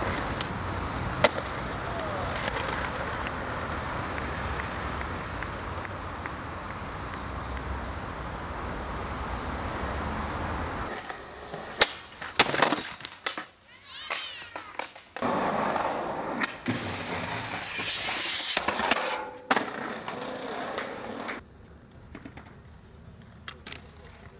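Skateboard wheels rolling over concrete in a long steady run, then the sharp clacks of a board being popped and landed about halfway through, followed by more rolling and scattered clicks.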